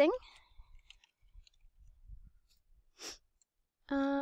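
Faint computer keyboard typing, a few scattered key clicks, then a short breath about three seconds in and a brief hummed 'mm' at the very end.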